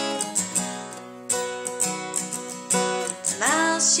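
Acoustic guitar strummed in a steady rhythm of chords. A singing voice comes back in near the end.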